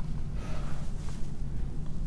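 A steady low hum with a faint breath over it. No distinct sound of the wire or pliers stands out.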